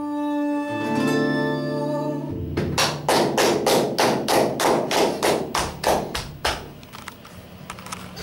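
The end of a live song with acoustic guitar: a held sung note over a ringing guitar chord, then about a dozen sharp, evenly spaced percussive hits, about three a second, that fade out near the end.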